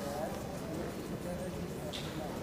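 Indistinct background voices at low level over a steady low hum.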